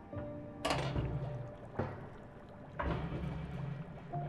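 Music with held tones while a stainless-steel laboratory autoclave lid is unlatched and swung open, heard as three sudden noisy bursts about a second apart.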